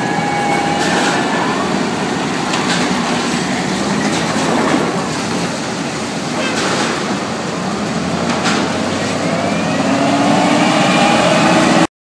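Large lumber forklift's engine running as it drives across the yard carrying a lumber unit, a steady mechanical din with a few brief knocks and a rising engine note late on. It cuts off abruptly just before the end.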